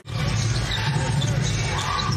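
Basketball arena game sound: a ball being dribbled on the hardwood court over a steady low crowd and arena murmur. The sound drops out for an instant at the start as the highlight clip changes.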